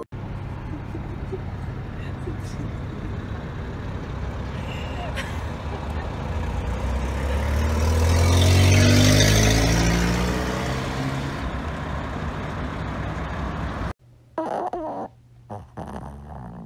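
Road traffic heard from inside a car: a steady low engine rumble. About seven seconds in, a vehicle engine accelerates, rising in pitch and loudest around nine seconds, then fades back. It cuts off suddenly near the end.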